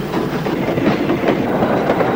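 Sound effect of an old steam locomotive running: a steady, noisy chuffing and clatter.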